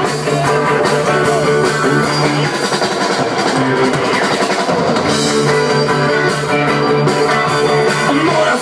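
A live rock band playing, with electric guitars and a drum kit, with no vocals heard.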